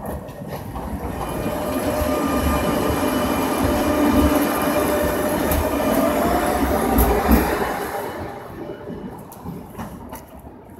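Articulated Tatra tram passing close by. Its wheel and running noise build up, peak with a steady whine over the middle seconds, then fade as it goes away, with two sharp clacks from the wheels over the track a few seconds in.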